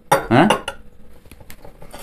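A man's short voiced exclamation, falling in pitch, in the first half second, followed by a few light glassy clicks of shot glasses being handled on a table.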